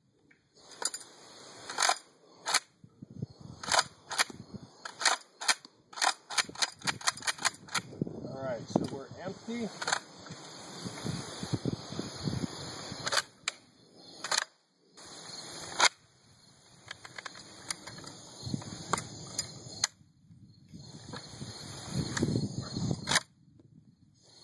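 Metallic clicks and clacks from a UTS-15 bullpup pump shotgun's action being worked by hand, with a quick run of clicks a few seconds in and single clacks scattered through the rest. No shot goes off: the gun is misfiring, its firing pin not striking the primers.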